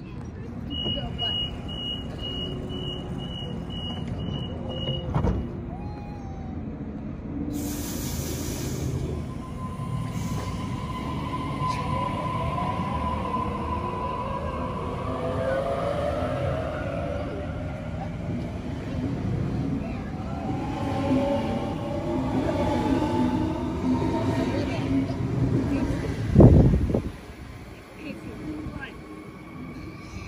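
Sydney Trains Waratah double-deck electric train departing: a row of evenly spaced door-closing beeps, then a hiss, then the traction motors whining in several rising tones as it accelerates away. A single loud thump sounds near the end.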